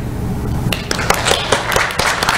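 Audience applauding. Scattered claps start a little under a second in and build into steady applause.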